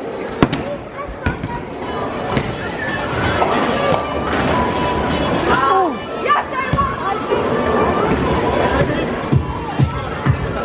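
Bowling alley din: background music and voices over a noisy hall, with sharp knocks and clatters of bowling balls and pins, several in quick succession near the end.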